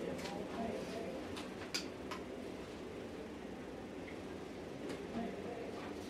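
Faint open-air stadium ambience picked up by a field microphone: indistinct distant voices over a steady hiss, with a few sharp clicks in the first two seconds and another near the end.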